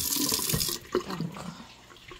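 Kitchen tap running into a stainless steel sink as mushrooms are rinsed in a metal strainer; the water is shut off abruptly about three-quarters of a second in. A few light knocks follow.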